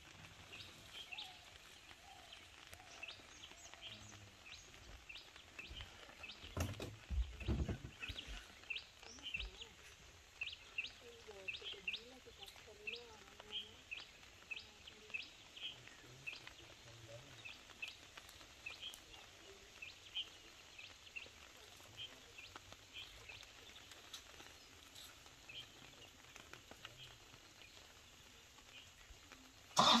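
A bird calling over and over with short high chirps, about one or two a second, over a quiet outdoor background. A brief low rumble stands out about seven seconds in.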